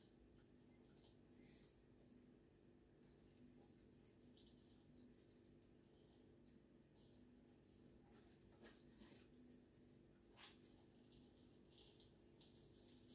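Near silence: a faint steady hum, with a few faint ticks.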